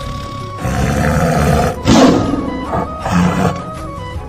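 Tiger roars and growls over background music: a drawn-out growl from about half a second in, the loudest roar at about two seconds, and a shorter one just past three seconds.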